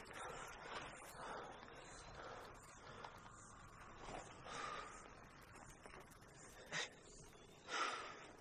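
Faint breathing, soft breaths every second or so, with two short sharp breaths near the end.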